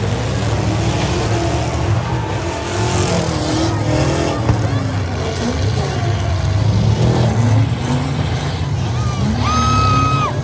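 Derby trucks' engines running together in a heavy, uneven low rumble, with crowd voices over it. Near the end a steady high tone sounds for about a second.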